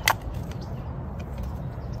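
Steady low outdoor rumble, with one sharp click right at the start.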